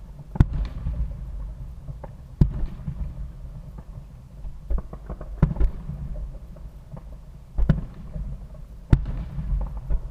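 Aerial firework shells bursting at a distance: about six sharp bangs at irregular intervals of one to three seconds. Each bang trails off into a low rumble.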